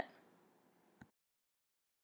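Near silence, with one faint click about a second in.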